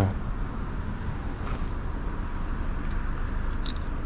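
Yamaha V Star 1300's V-twin engine idling steadily, a low even rumble from the stopped motorcycle.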